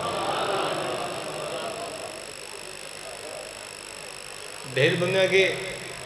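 A man's amplified speech through a microphone and loudspeakers pauses, its echo fading over the first couple of seconds. A faint steady background with thin high-pitched tones is heard in the gap, and his voice returns near the end.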